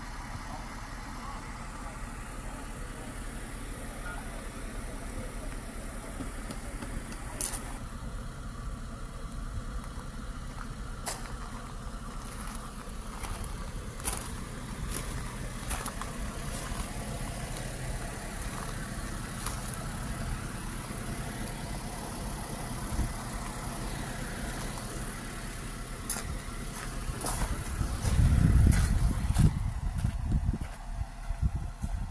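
A car engine idling steadily, with scattered sharp clicks and a louder burst of low noise about two seconds before the end.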